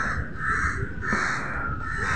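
Crows cawing repeatedly, harsh calls coming about every half second, over a low hum of street traffic.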